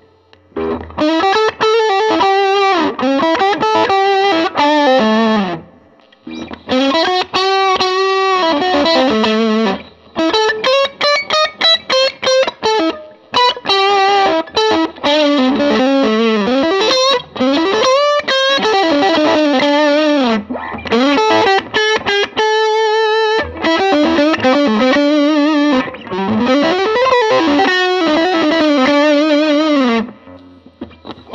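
A 1996 PRS CE electric guitar played with heavy overdrive: a distorted single-note lead line with string bends and vibrato, in phrases with short pauses between them. The notes stay clear and distinct under the heavy drive.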